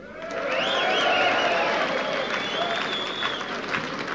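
Concert audience applauding and cheering. The applause swells up in the first half second, and shrill whistles rise and fall over it for about three seconds.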